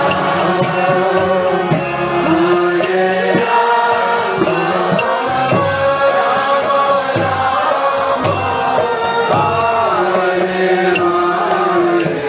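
Kirtan: voices chanting a mantra in long, held, gliding notes over steady instrumental accompaniment, with hand cymbals struck in a regular beat.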